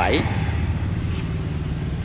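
A motor engine running steadily nearby, giving a continuous low hum.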